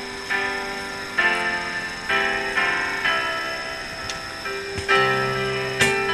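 Live acoustic music: slow plucked-string chords, one struck about every second, each ringing and fading before the next. Lower bass notes join near the end.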